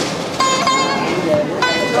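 Đàn tranh (Vietnamese zither) plucked: a high note about half a second in whose pitch wavers as the string is pressed, then a second note near the end.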